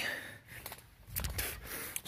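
A breathy exhale from the person holding the camera, fading over the first half second, then a brief low rumble on the microphone as the camera swings around.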